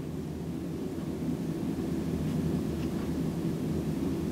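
Steady low rumble of room background noise, with a few faint squeaks of a felt-tip highlighter drawing along a line on a textbook page.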